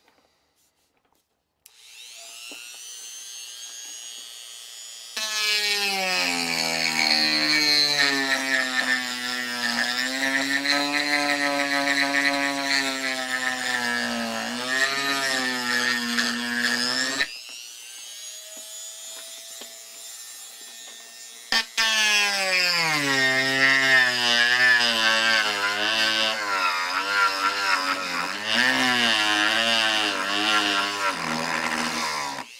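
Handheld rotary tool switching on about two seconds in with a rising whine and running free. It then carves into wood with a round-head carving bit, its pitch wavering and dropping under load in two long stretches, with a short spell of lighter free running between them.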